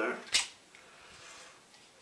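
A single sharp click about a third of a second in as a new trowel and its card packaging are handled, followed by faint rustling.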